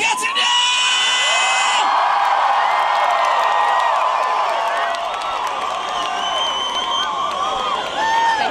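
Large concert crowd cheering, whooping and screaming just after a rock song ends, with a few held high tones cutting off about two seconds in.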